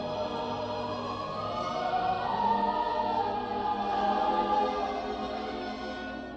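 Orchestral film music with a choir singing long held notes, swelling and growing louder in the middle and easing off near the end.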